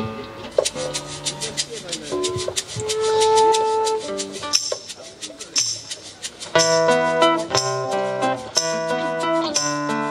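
Acoustic folk band starting a song live: guitar picking under a steady percussion tick, with a few held melody notes. About six and a half seconds in, the rest of the band comes in, fuller and louder, with accordion and fiddle among guitars and drums.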